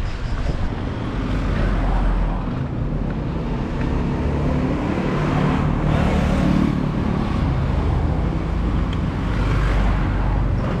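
Steady road traffic noise, with a car engine running close by.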